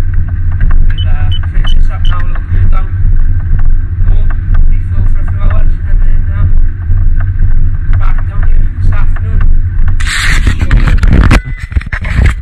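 Treadmill running under a jogger: a steady low belt-and-motor rumble with footfalls striking the deck in an even rhythm of about three a second. Near the end, a loud rustling, knocking handling noise as the camera is picked up and moved.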